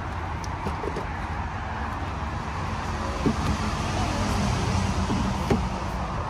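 Steady rumble of road traffic, with a few faint clicks and knocks as a CCS charging connector is lifted from a rapid charger and carried to the car.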